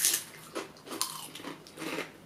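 Two people biting into and chewing Estrella lentil chips, several crisp crunches.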